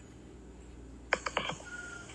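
A quick run of a few light clicks about a second in, over a low steady hum.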